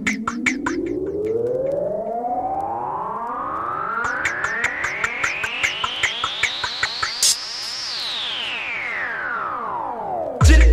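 Electronic drum and bass track: a synthesizer sweep rises steadily in pitch for about eight seconds and then falls, over crisp hi-hat ticks that drop out for a few seconds and come back, with a short burst of noise about seven seconds in.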